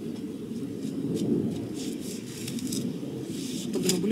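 A garden spade being worked into soil around plants, with faint, scattered scrapes and rustles of earth and leaves over a steady low background hum.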